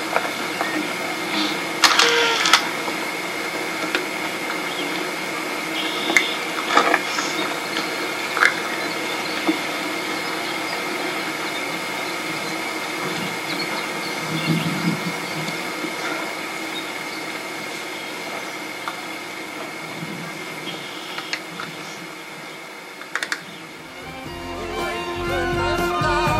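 Steady mechanical hum with a faint whine and hiss, broken by a few soft ticks. Music with singing comes in near the end.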